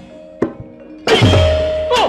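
Javanese gamelan accompaniment to a wayang kulit play: a sharp knock about half a second in, then the full ensemble comes in loudly about a second in with a held note over deep drum strokes.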